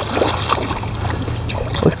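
Spinning reel being cranked and rod handled as a small trout is reeled in to the shore, with light splashing from the water and scattered small clicks.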